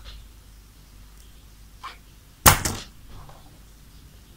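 A sharp clatter about two and a half seconds in, a few quick rebounding strikes: metal scissors set down on a wooden desk. A faint click comes just before it.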